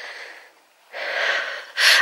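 A woman breathing close to the microphone: two breaths with a short pause between, the second louder, just before she speaks again.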